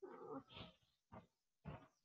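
Near silence, with a faint, brief voice-like call in the first half-second and a couple of tiny faint sounds after it.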